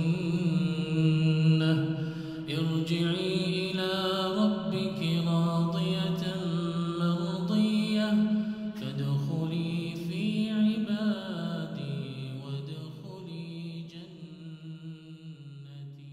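A man's solo chanted Quran recitation, melodic with long held notes and slow rises and falls in pitch, fading gradually over the last few seconds.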